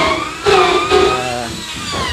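A person's voice holding long, drawn-out vowel sounds that bend in pitch, the kind of hesitation a speaker makes between words.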